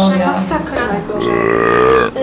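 A person belching: one long, loud burp starting about a second in and lasting about a second.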